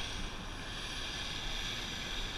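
Steady beach ambience of wind on the microphone and surf, an even rush with no distinct events.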